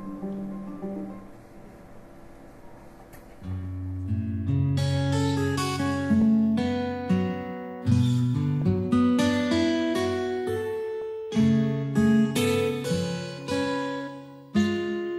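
Acoustic guitar music: a soft passage, then from about three and a half seconds in, louder plucked notes over a bass line.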